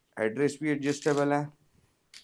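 A man's voice talking, in phrases lasting about a second and a half, then dropping away near the end.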